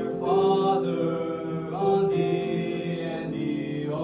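Young male voices singing a slow song together in long held notes.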